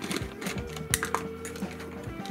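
Plastic clicks and rattles as the screw lid of a plastic jar is twisted off, then the small plastic spring clamps inside clatter against each other as a hand reaches in.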